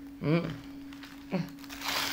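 A woman's appreciative "mmh" as she sniffs a cookie, then a second short hum about a second later. A paper bag crinkles in her hands, over a steady low hum.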